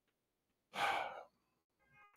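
A man's single short sigh, a breathy exhale about a second in.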